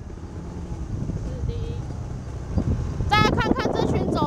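Low, steady rumble of wind on the microphone and a scooter engine while riding. About three seconds in, a person's voice calls out loudly over it.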